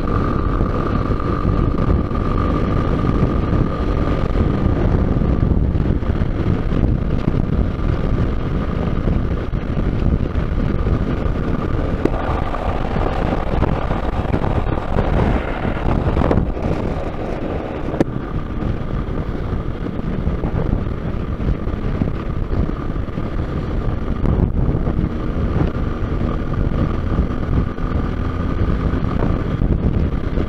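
Motorcycle running at highway speed, its engine buried under heavy wind rushing over the microphone. A thin steady whine comes and goes above the noise.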